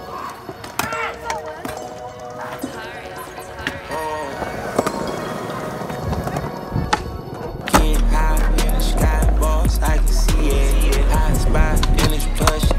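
Skateboard wheels rolling on concrete with sharp board clacks and some voices, then music with a heavy bass line cuts in loudly a little before eight seconds in.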